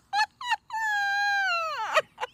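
A high, drawn-out cry from a voice, preceded by two short yelps. It is held steady for over a second, then slides down in pitch and stops.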